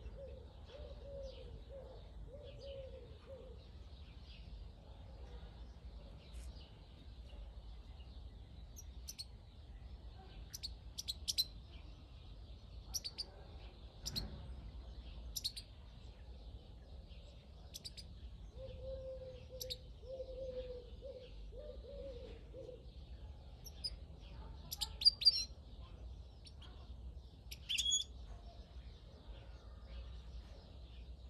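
Scattered short, high chirps from a caged European goldfinch, sparse calls rather than a full song, the loudest coming near the end. A dove coos in a short run of low notes at the start and again about two-thirds of the way through, over a faint high twitter of other birds.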